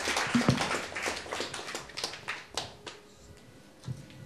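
Audience applauding, the clapping thinning out and dying away about three seconds in.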